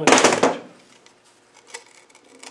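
Rover V8 starter motor housing and brush pack being knocked loose with a hammer: a brief metallic rattle and scrape in the first half-second, then a faint click near the end.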